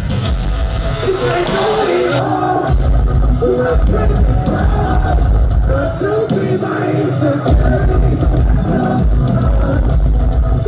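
Live metalcore band playing loud through a venue PA: distorted guitars, heavy drums and bass, with a sung lead vocal line over them. Recorded on a phone from within the crowd.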